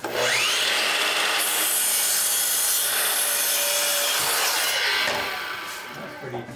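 Makita sliding compound miter saw starting up with a quick rising whine and cutting through a wooden board. The saw runs loud and steady for about five seconds, then winds down near the end.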